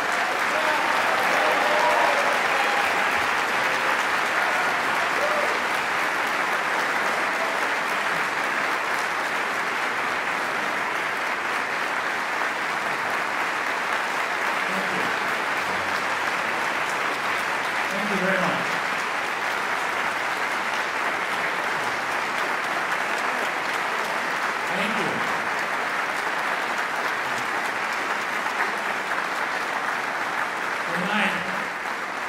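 Large audience in a concert hall applauding steadily and at length, a dense unbroken clapping, with a few voices heard briefly over it.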